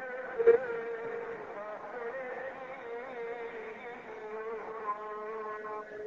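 Religious chanting over a loudspeaker: a single voice holds long, wavering notes near one pitch, bending slightly up and down. There is a brief knock about half a second in.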